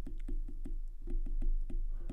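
Stylus tip tapping and clicking on a tablet's glass screen during handwriting, a quick run of light taps at about six or seven a second, over a steady low hum.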